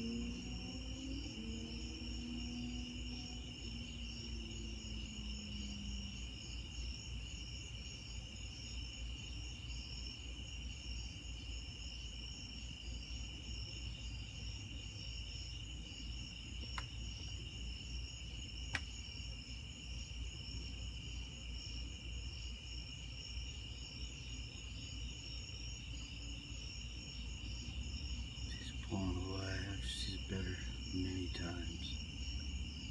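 Night insects, crickets, trilling steadily, with a faster pulsing higher trill above, over a low steady rumble. Two sharp clicks come in the middle.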